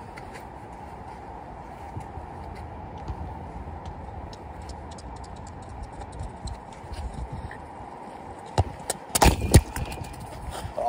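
A football landing right beside the microphone: several loud thuds in quick succession near the end, over steady low background noise with faint scattered ticks.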